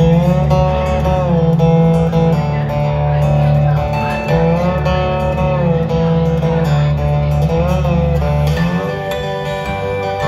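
Acoustic lap steel guitar played live with a slide, sustained notes gliding smoothly up and down between pitches, over a steady low bass that drops out near the end.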